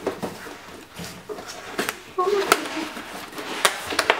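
Cardboard shipping box being handled and opened: rustling of the flaps and a series of sharp knocks of cardboard against cardboard, the loudest about two and a half seconds in and again near the end.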